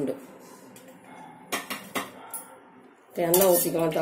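Metal cookware clanking: a few sharp clanks about a second and a half to two seconds in.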